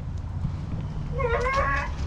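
A domestic cat meows once, a short high call that rises and then holds, starting a little over a second in.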